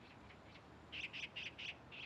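Faint bird chirping: a quick run of about five or six short, high chirps starting about a second in.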